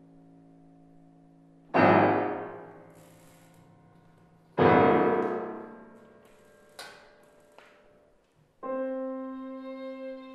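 Grand piano chords in a contemporary chamber piece: two loud struck chords about three seconds apart, each left to ring and die away. A couple of faint clicks follow, and near the end a bowed string note enters and is held steady.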